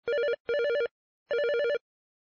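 Electronic telephone ringing: a warbling two-tone trill in three bursts, two short ones close together and a longer one after a brief pause.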